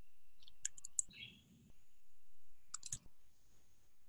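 A few sharp, quiet clicks in two brief clusters, one about half a second to a second in and another near three seconds, over a faint steady high-pitched tone on the call line.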